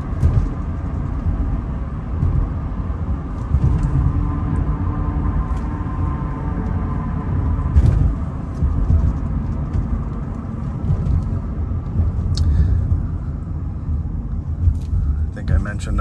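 Cabin noise of a 2001 Nissan Maxima GLE cruising at road speed: a steady low rumble of tyres and road with the V6 engine humming underneath. There is a light click about eight seconds in and another a few seconds later.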